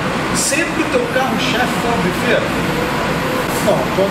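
Men talking in Portuguese, over steady background noise.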